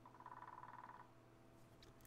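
Woodpecker drumming faintly in a rapid roll about a second long.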